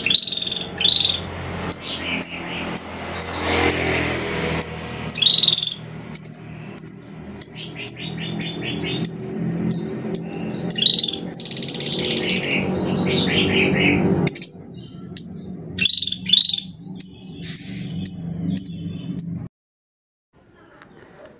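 Scaly-breasted bulbul (kutilang sisik) singing: a quick run of short, high chirps and whistled phrases. A steady low background noise lies under the song and drops away about fourteen seconds in, leaving the chirps alone until the song cuts off just before the end.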